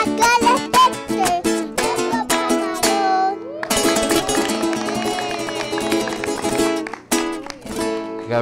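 Acoustic guitar strummed in a lively rhythm, accompanying voices singing a Christmas song, with hands clapping along.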